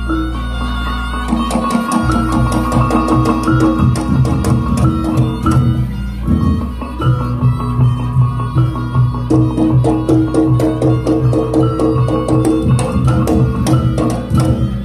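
Reog Ponorogo music accompanying the lion-mask dance: drums and other percussion keep a steady beat under sustained melodic lines. A deep low ringing tone at the start stops about two seconds in.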